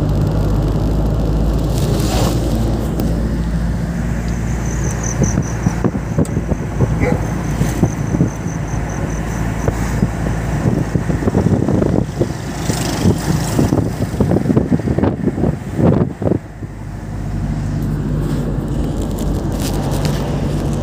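A motor vehicle's engine running steadily while driving along a road, with road noise. Irregular gusts of wind hit the microphone in the second half.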